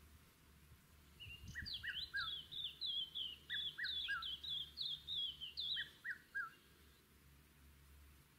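A songbird singing a quick run of high, falling chirps for about five seconds, starting about a second in, with a lower three-note phrase coming in three times.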